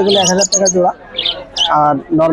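Caged budgerigars chirping in a few short, high bursts over a man's voice.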